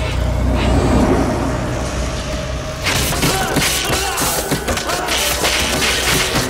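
Film sound effects for a large mechanical drone reaching a man in his pod. A deep rumble gives way, about three seconds in, to a sudden busy run of metallic clanks, clicks and thuds.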